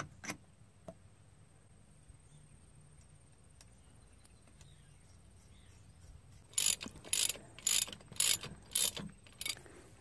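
Ratchet wrench clicking in about six short strokes, roughly half a second apart, in the last few seconds, snugging the nuts that hold a hydraulic Power Beyond block on the tractor's rear remote stack. A few faint clicks of metal parts being handled come near the start.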